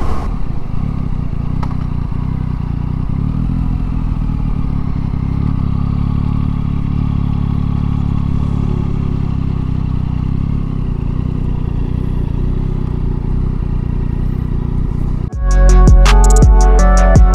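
Yamaha MT-09 SP motorcycle's inline three-cylinder engine running at low, steady revs as the bike rolls along. Music cuts in suddenly near the end.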